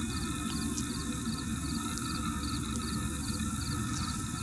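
A cricket chirping faintly and evenly, about three short high chirps a second, over a steady low rumble.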